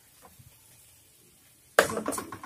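Quiet, barely audible stirring of squid thoran with a wooden spatula in a clay pot. Near the end comes a sudden loud noise.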